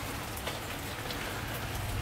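Steady patter of freezing rain and drips on ice-glazed branches and leaves, with scattered faint ticks.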